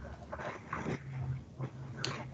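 A dog making a few faint sounds in the background of a video call.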